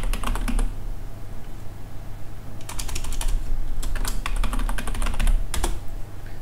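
Computer keyboard typing in short bursts of key clicks, with a pause of about two seconds near the start, over a low steady hum.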